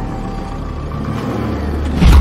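Low rumble of a Mercedes-Benz car engine, swelling louder in the second half.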